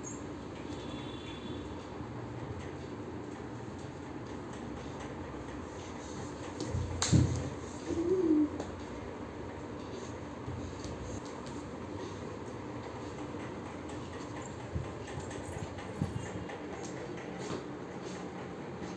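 Steady indoor background hum, broken about seven seconds in by one dull thump and, a second later, a short wavering vocal sound from a toddler, with a few light knocks near the end, as the child plays with a soft toy on a hard marble floor.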